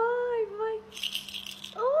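Hollow plastic ball toy rattling briefly, about a second in, as a Moluccan cockatoo shakes it in its beak. A high-pitched voice comes just before it.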